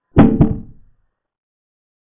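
A chess program's piece-capture sound effect: two quick wooden knocks about a quarter second apart, the first the louder, dying away within a second.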